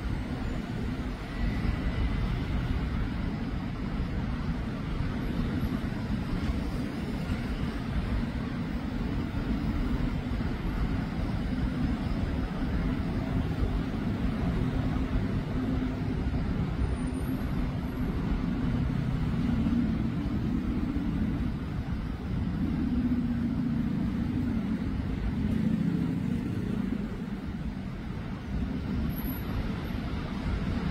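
Steady city road traffic: car and truck engines running with a constant low rumble.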